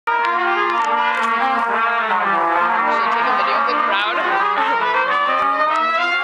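Trumpet quartet playing: four trumpets sounding together in harmony, several notes held and moving at once.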